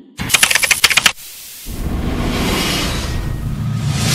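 A fast run of sharp typewriter-like clicks for about a second, then after a brief lull a steady rushing noise that carries on to the end.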